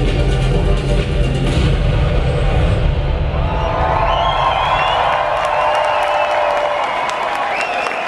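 Live band music with a heavy bass fades out about three seconds in. A concert crowd then cheers and screams, with scattered clapping.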